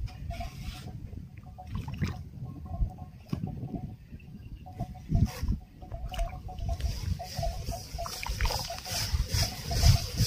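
A shovel scraping and slopping through wet cement mix on hard ground, in irregular strokes.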